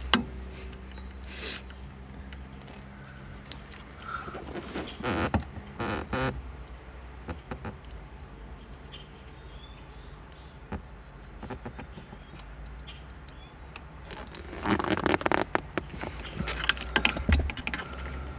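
Crimping pliers and plastic heat-shrink butt connectors handled and squeezed onto wires in a harness splice: scattered clicks and rattles in three bunches, about a second and a half in, around five to six seconds in, and from about fourteen seconds to near the end, over a steady low hum.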